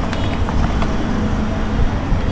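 Steady low background rumble with a few faint clicks of computer keyboard keys as a word is typed.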